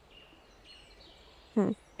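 Quiet outdoor ambience with faint, high, thin bird calls. A short voiced "hmm" comes near the end.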